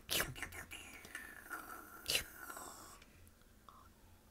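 Faint sipping and swallowing from a glass held close to the microphone: soft breathy slurps, with a single sharper click about two seconds in.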